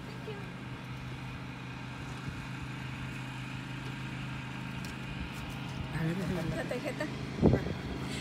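A steady low hum from a running motor, with a few faint voices late on and a single thump near the end.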